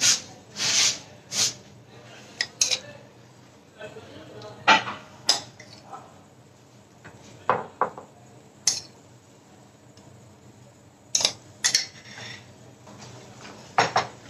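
Metal spoon clinking and scraping against a glass bowl and a ceramic serving plate as salsa is scooped out and spooned on top, in a dozen or so separate, irregular clinks.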